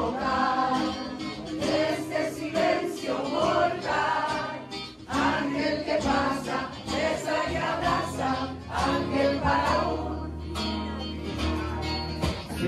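Live music: an acoustic guitar accompanying singing voices.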